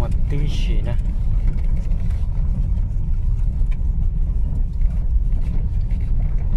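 Steady low rumble of a car driving over an unpaved dirt surface, heard from inside the cabin.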